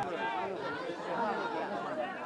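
Chatter of several overlapping voices, people talking and calling out at once with no clear words, the live crowd sound of a small football ground.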